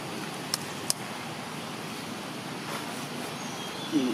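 Steady outdoor background noise with two brief sharp clicks, about half a second and just under a second in.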